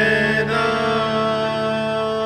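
A song: a male voice holds one long sung note, an open 'naa', over a steady instrumental backing.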